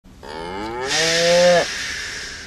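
A single long cow moo that rises in pitch and then holds, with a breathy hiss that carries on briefly after the tone stops.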